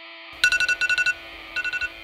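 An electronic ringer trilling in short bursts, two close together about half a second in and another near the end, over a steady sustained chord that opens the song. It is a wake-up ring.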